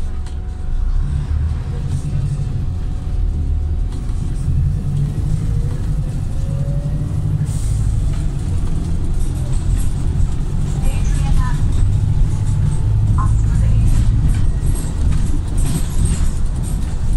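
Volvo B5TL double-decker bus's four-cylinder diesel engine and drivetrain running under way, heard inside the passenger cabin as a steady low rumble that grows a little louder toward the end. A faint rising whine comes through about six seconds in.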